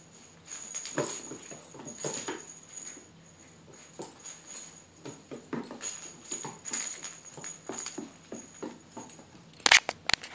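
Small bell on a hanging puppy toy jingling in repeated bursts as a Shetland Sheepdog puppy swats and tugs at it, with light clicks and knocks from paws and the toy on a wooden floor. Near the end come a few loud knocks as the puppy bumps into the camera.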